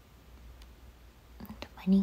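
Quiet room tone with a steady low hum, then a young woman begins speaking softly near the end, saying "arigatou" (thank you).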